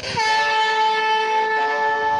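A recording played from a handheld talking reading pen's speaker: a long, steady horn-like note that starts abruptly just after the pen tip touches the printed page.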